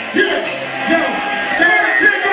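Packed club crowd at a live hip-hop show, many voices yelling and whooping over one another, with music underneath.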